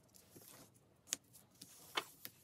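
Faint, irregular light taps and clicks of a hand moving a game piece over a paper board game, with the sharpest tap about a second in and another near the end.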